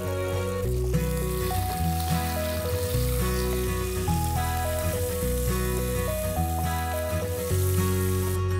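Sliced onions and mint leaves sizzling in hot oil in an aluminium pressure cooker while being stirred with a spatula. Background music with a melody over a bass line plays throughout.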